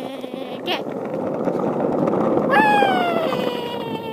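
Small hard wheels rolling over asphalt, a steady rumble that grows louder toward the middle and then eases a little. A long drawn-out voice sound falls slowly in pitch from a little past halfway.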